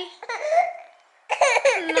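A baby's high-pitched vocal sounds that break off about a second in and start again shortly after.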